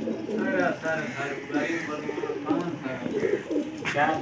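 A flock of domestic pigeons cooing, with many calls overlapping and repeating throughout.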